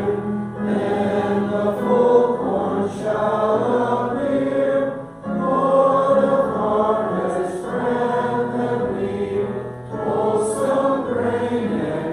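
Congregational worship song: several voices singing together, accompanied by acoustic guitar and digital piano, with short breaths between phrases about five and ten seconds in.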